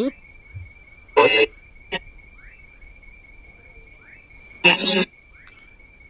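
Two brief bursts of crackly sound from a spirit box, one about a second in and a louder one near the end, answering a question put to the spirits. A steady high insect trill runs underneath.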